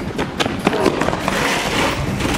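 Scuffling shoes and several sharp knocks as two people scramble for a school chair with a plastic seat and metal legs on a concrete floor.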